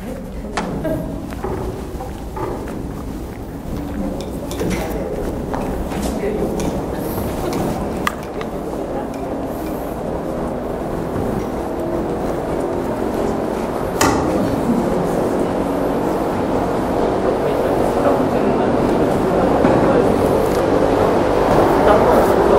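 Many people talking at once in a large, echoing hall, an indistinct murmur of overlapping voices that grows louder toward the end. A few sharp knocks cut through it, the clearest about two-thirds of the way in.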